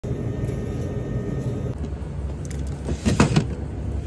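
Steady low hum of refrigerated store cases. About three seconds in there is a brief rustling knock as items are handled.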